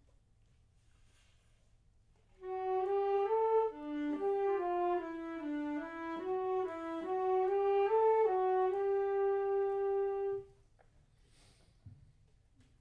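Two wind instruments playing a short slow phrase in two parts, starting about two and a half seconds in and ending on a long held note that cuts off near the ten-second mark.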